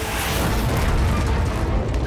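Cartoon explosion sound effect: a long rumbling blast that swells to its loudest about a second in, as a shot blows a hole through a house wall.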